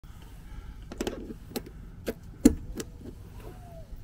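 About five sharp metallic clicks and knocks, the loudest about halfway through, from handling a brass propane quick-connect fitting and gas hose.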